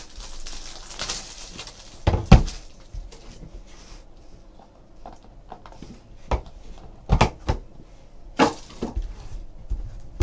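A trading card box being opened and handled on a table: packaging rustling at first, then several sharp knocks and taps, the loudest about two seconds in.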